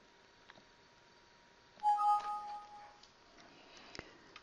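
Windows system alert chime of two steady tones, a lower one joined a moment later by a higher one, ringing for about a second as a warning dialog box pops up. There are faint mouse clicks before it and just before the end.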